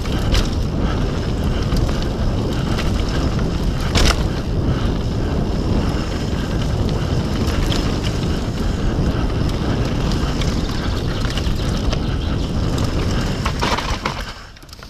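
Wind rushing over the camera microphone and tyres rolling fast over a dirt trail on a mountain bike descent, with scattered clicks and knocks from the bike over rough ground and one sharp knock about four seconds in.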